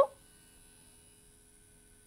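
Near silence with a faint, steady electrical hum, after a woman's spoken word ends right at the start.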